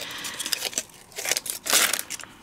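Backing paper being picked and peeled off the back of a thick die-cut cardstock sticker: a run of small papery scratches and crinkles, loudest about three quarters of the way through.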